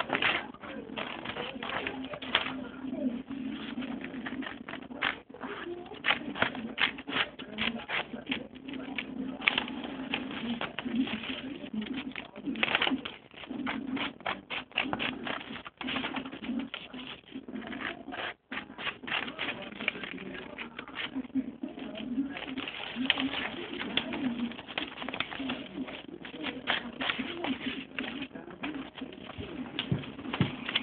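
Scissors repeatedly snipping through paper close to the microphone, over a low steady hum.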